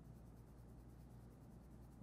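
Near silence: faint scratching of a coloured pencil shading on paper in small circular strokes, over a low steady hum.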